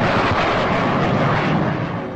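A US Navy F/A-18 Hornet fighter jet flying past, its twin jet engines making a loud, steady rushing noise that starts to fade near the end.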